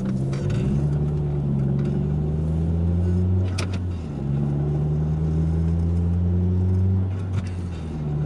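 Car engine and road hum heard from inside the cabin while driving. The engine note climbs slightly, dips briefly about four seconds in, then holds steady.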